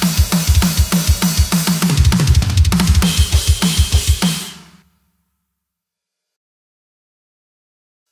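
Acoustic drum kit playing a fast metalcore 'fraction fill': right-left strokes on the hands alternating with right-left strokes on the double kick, with heavy low kick hits throughout. It stops about four and a half seconds in, fading out within half a second into silence.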